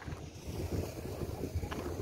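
Wind buffeting the phone's microphone, a low rumble that rises and falls in gusts.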